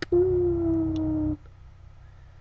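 A person's voice holding one drawn-out, howl-like vowel for just over a second, sagging slightly in pitch before stopping, with a sharp click at its start.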